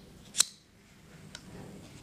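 A single sharp click about half a second in as a hand lighter is struck to light the alcohol burner's wick, followed by a fainter click and a low, soft sound that slowly grows.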